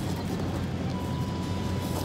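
Steady outdoor background noise with a low rumble and no distinct events, and a faint thin steady tone through about the last second.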